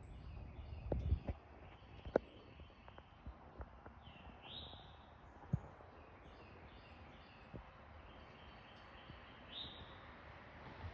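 Wild birds calling: short repeated high notes, with a louder upswept call about four seconds in and again near the end. A few brief clicks of phone handling come over them.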